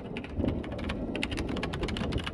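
Computer keyboard typing: quick, irregular key clicks over steady rain and a low rumble.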